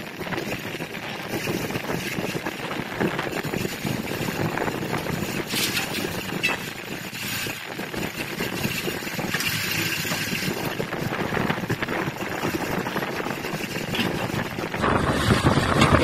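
Wind buffeting the microphone over a steady hum of engines and traffic, with a few faint knocks and scrapes of metal.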